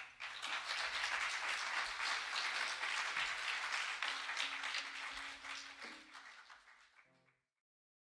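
Audience applauding, dense clapping that fades out about seven seconds in.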